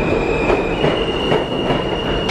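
New York City subway train moving along the platform, its steel wheels squealing on the rails with a steady high tone that steps up slightly in pitch under a second in, over the loud rumble of the cars.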